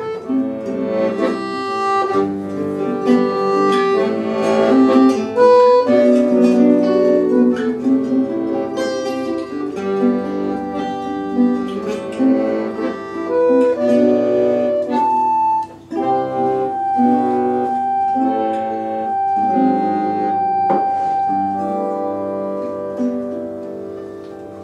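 Acoustic guitar and piano accordion playing an instrumental tune together, the accordion holding a long note in the second half. The music dies away near the end.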